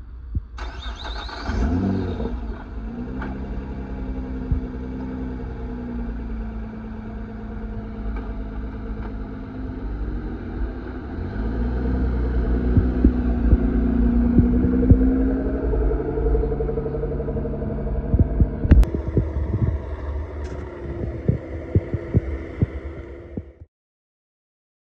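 Nissan GT-R's twin-turbo V6 running at idle with a deep, throbbing exhaust note. It flares briefly in pitch just after the sound begins, then swells up and back down once in a light rev around the middle. A couple of sharp clicks come late on before the sound cuts off abruptly.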